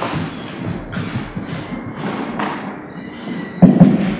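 A microphone on a table stand being handled and adjusted, picking up thumps and knocks, the loudest thump near the end.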